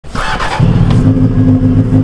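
Motorcycle engine idling steadily. It comes in loudly about half a second in, after a brief higher-pitched noise.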